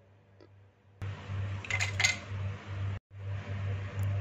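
Near silence for about a second, then light clinks of glassware and a soft rustle as a glass grinder jar of ground biscuit crumbs is handled and tipped into a glass bowl, over a steady low hum.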